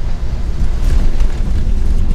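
Loud, steady low rumble inside a moving Tesla Model 3 on wet tarmac: road and tyre noise mixed with wind buffeting on the microphone.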